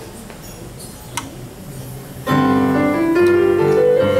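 Low room noise with a single click about a second in, then, just over two seconds in, an electronic keyboard with a piano sound starts playing chords and a melody line: the introduction of a song's accompaniment.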